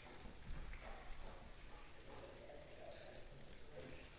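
Faint, irregular light taps and knocks over quiet room tone, with a faint murmur in the background.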